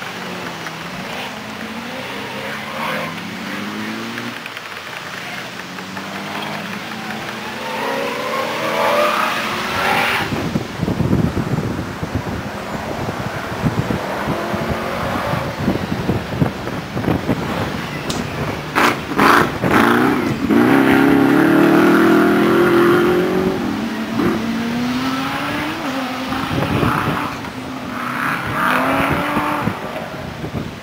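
Off-road competition vehicles' engines revving hard over rough ground, the note climbing and dropping again and again through the gears. A few sharp knocks come about two-thirds of the way through, just before the loudest stretch of engine.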